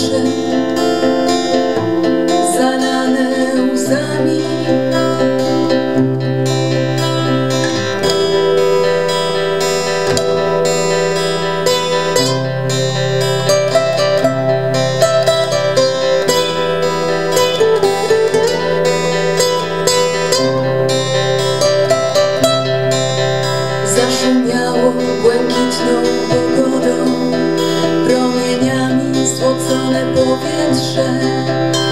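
Two acoustic guitars playing an instrumental passage of a song: a steel-string acoustic-electric and a classical guitar, picked and strummed together over a bass line that moves every few seconds.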